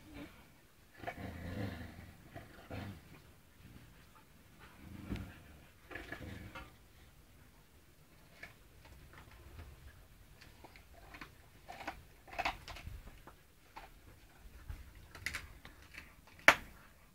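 Husky puppies and an adult husky making scattered short, low growls, with small clicks and scuffles between them; the growling comes in several separate bouts.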